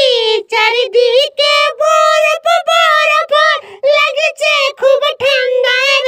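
A high, child-like voice singing a quick string of short syllables.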